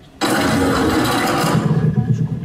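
Sound effect from the soundtrack of a promotional robot video, played over a hall's loudspeakers. A loud, dense noisy sound starts suddenly just after the start and holds for about two seconds, with a low hum growing under it near the end.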